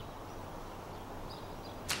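Quiet outdoor ambience: a steady low background with a few faint, high bird chirps. A short sharp sound comes near the end.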